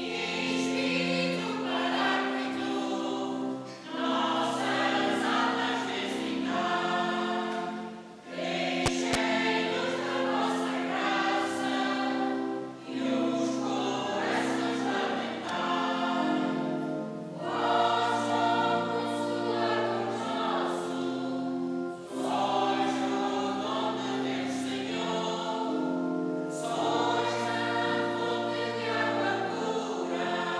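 A church choir of men and women singing a hymn in long held phrases of about four seconds each, with short breaks between them.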